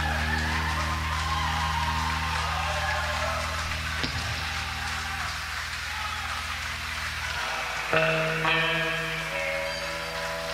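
Live psychobilly band on a raw tape recording: low notes held and ringing steadily, with a sharp click about four seconds in. Near the end electric guitar chords are struck and the music gets louder.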